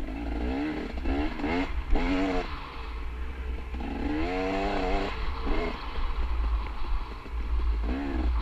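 Dirt bike engine revving up and down in short bursts of throttle while riding singletrack, over a steady low rumble of wind on the microphone.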